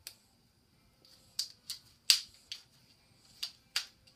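Sharp crackling snaps of blue tape being peeled off by hand in short pulls, about seven in four seconds, the loudest about halfway through.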